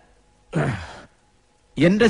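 A man's breathy, voiced sigh falling in pitch, about half a second long, heard about half a second in; a man starts speaking near the end.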